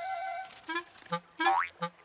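Cartoon music and sound effects: a held note, then a string of short notes with quick upward pitch sweeps in the second half.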